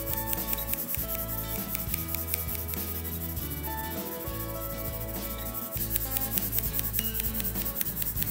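Graphite pencil scratching back and forth on paper in quick, light shading strokes along a ruler's edge, building up an even layer of tone. Soft background music with held notes plays underneath.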